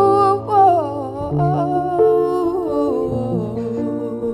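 A woman's voice singing a slow melodic line that glides downward and fades about three seconds in, over sustained piano notes.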